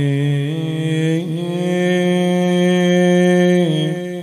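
A man's solo voice chanting a Shia Muharram mourning lament (zamineh) into a microphone, without instruments. He holds long drawn-out notes, stepping up in pitch twice in the first second and a half, holding steady, then falling and fading near the end.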